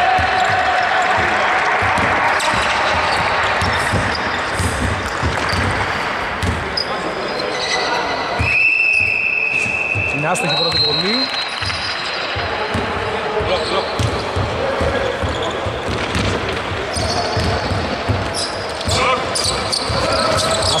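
Basketball bouncing on a wooden court, with footfalls and a few high, held squeaks, echoing in a large hall, with players' voices in the background.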